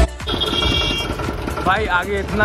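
Street traffic with a motorcycle engine idling close by in an even, fast beat. A brief high-pitched tone sounds early on, and a voice is heard near the end.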